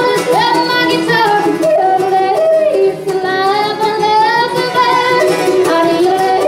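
Live bluegrass band playing: acoustic guitar, mandolin, fiddle and upright bass, with a high lead melody of held, sliding notes over the strummed rhythm.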